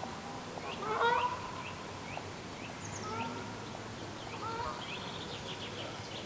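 Outdoor birdsong and bird calls: a louder, lower call about a second in and a weaker one near four and a half seconds, over many short high chirps, with a quick high trill near the end.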